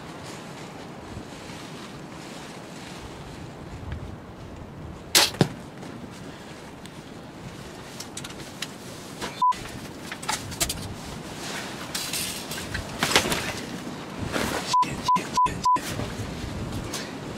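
A bow shot at a turkey: two sharp cracks about a fifth of a second apart, about five seconds in, the bowstring's release and the arrow striking. Later come short single-pitch censor bleeps, one about nine seconds in and four in quick succession near the end, with scattered rustling between them.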